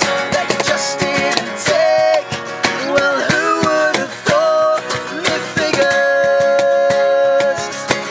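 Acoustic band performance: two acoustic guitars strummed over a cajón beat, with sung vocals.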